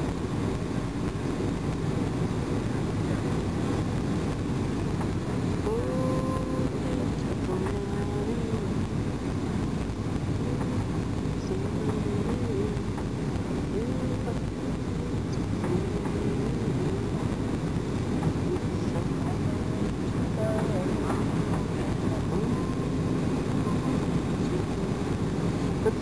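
Steady cabin noise of a Boeing 737-800 on final approach, a low, even roar of its CFM56 turbofans and airflow heard from a window seat. Faint voices are heard beneath it in places.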